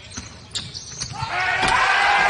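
Basketball game court sounds on a hardwood floor: a few ball bounces and knocks, then, from a little over a second in, a loud burst of many overlapping sneaker squeaks.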